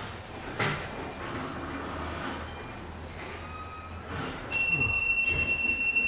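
Faint background noise, then about four and a half seconds in a steady high-pitched machine whine sets in over a low hum.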